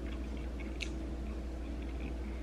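A person chewing soft stir-fried noodles and cabbage, with small wet mouth clicks and one sharper click a little under a second in, over a steady low hum.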